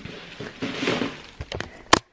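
Handling and rustling noise from a handheld camera being carried and swung round, with a few small clicks. A sharp click comes just before the end, where the sound cuts off.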